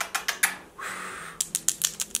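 A run of sharp clicks and taps from long fingernails, quickening to about six a second in the second half, with a short breathy blow about a second in.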